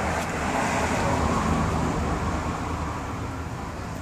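Road traffic noise from the street, a vehicle passing: a rumbling hiss that swells about half a second in and fades toward the end.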